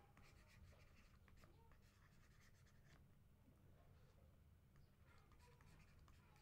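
Very faint stylus taps and scratching strokes of handwriting on a tablet, over a steady low hum.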